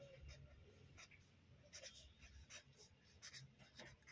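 Felt-tip marker writing on paper: faint, irregular short strokes as letters are written.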